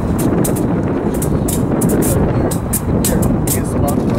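Freight train's diesel locomotives passing close by: a loud, steady engine rumble with frequent sharp clicks and rattles over it.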